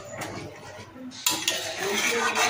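Water poured into a metal kadai of fried moong dal and millet, splashing into the pan, with a sharp metal clank about a second and a quarter in.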